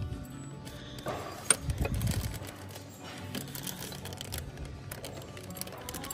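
Clear plastic bags holding ceramic figurines crinkling and rustling as they are handled, with a sharp click about one and a half seconds in, over the store's background music.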